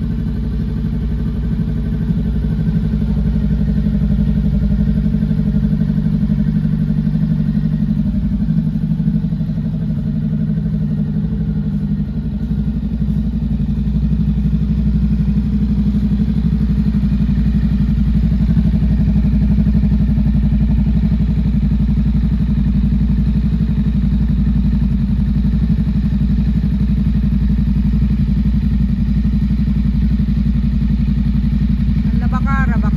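Cruiser motorcycle engine idling steadily.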